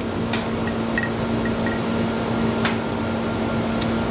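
Steady hum and hiss of a running Oxford Plasmalab 800 Plus PECVD system, its vacuum pumps and chiller, with one constant low tone, while the plasma process runs. Two faint clicks, one shortly after the start and one near three seconds in.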